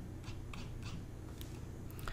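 Faint, scattered clicks of a computer mouse, about five in two seconds, over a low steady hum.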